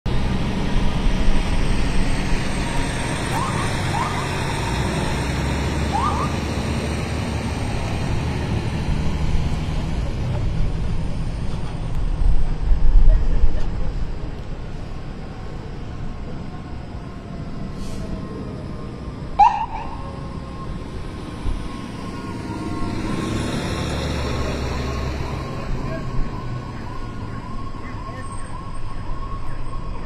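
Emergency vehicles on a city street: a heavy engine rumbling, loudest about twelve seconds in, with short siren chirps three times a few seconds in and once more just before the middle. A steady warbling siren sounds in the background in the last part.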